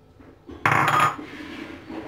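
A small ceramic bowl set down on a granite worktop: a short, loud scraping clatter about half a second in that fades within half a second.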